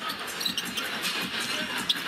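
Arena crowd murmur with basketball sneakers squeaking sharply on the hardwood court during live play, a few short squeaks standing out.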